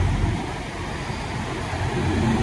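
Steady low rumble of parked diesel semi trucks idling across a truck stop lot, dipping slightly in level about half a second in.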